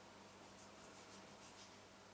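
Faint scratching of a thin knife cutting into a pumpkin, a short run of scratchy strokes between about half a second and a second and a half in, over a low steady hum.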